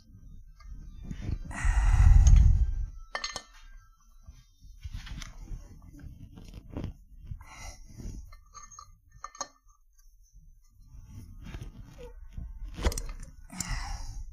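Small metal clinks and clicks from hands working at a valve spring on an aluminium cylinder head while the valves are being removed, with a louder muffled thump and rustle about two seconds in.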